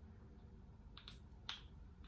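Two quick, faint spritzes of a Catrice Prime and Fine matte setting spray misted at the face, one about a second in and the next half a second later.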